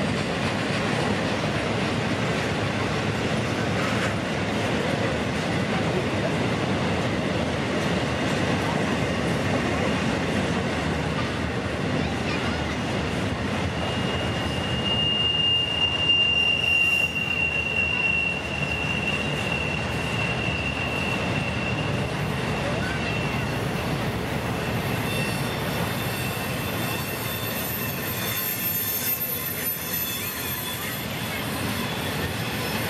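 Norfolk Southern intermodal train of flatcars carrying truck trailers rolling past, with continuous wheel-on-rail rumble. About halfway through, a high, steady wheel squeal sets in as the wheels grind through the tight curve; it is loudest for a few seconds, then fades, and fainter squeals return near the end.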